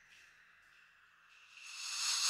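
Quiet passage of ambient electronic music: a faint hiss-like texture with a thin steady high tone, swelling into a louder hiss near the end.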